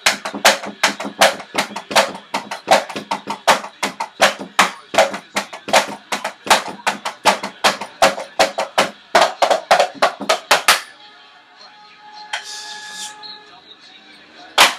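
Drumsticks striking the rubber and mesh pads of an electronic drum kit, heard only as the sticks' own clacks and thuds because the kit's sound goes to headphones: a fast run of hits, several a second, that stops about eleven seconds in.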